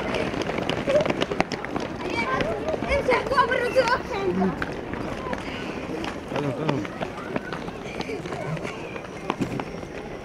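A crowd of children shouting and calling out while running on a road, their many voices overlapping, with the patter of running footsteps. The voices are busiest in the first four seconds and thin out after.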